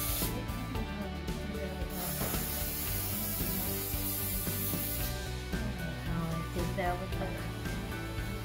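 Aerosol baking spray hissing from the can: a few short sprays, then one long spray of about three seconds starting about two seconds in. Background music plays throughout.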